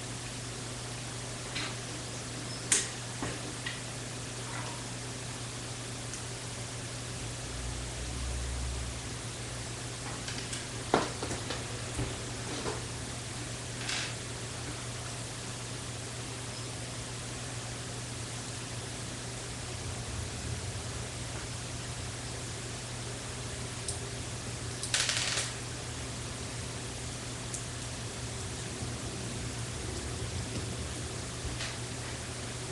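Steady hiss and low hum, with a few sharp plastic clicks scattered through and a brief rustle later on, as of Lego bricks being handled and snapped together.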